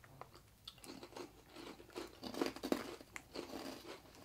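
People biting into and chewing small crunchy Amanoya Petit Kabukiage rice crackers: an irregular run of quiet crunches.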